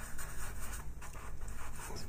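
Faber-Castell Pitt pastel pencil scratching faintly across textured pastel paper in a series of short strokes, laying colour into a background.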